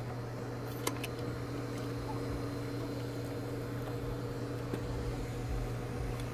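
A steady low hum of a running motor, with a faint click or two.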